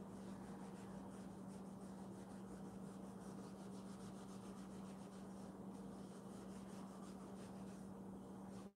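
A cotton pad rubbing over eel skin leather in faint repeated strokes, wiping off excess leather conditioning cream. A steady low hum runs underneath.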